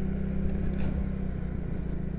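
Motorcycle engine running steadily while riding at an even speed, a constant low hum mixed with road and wind noise heard from on the bike.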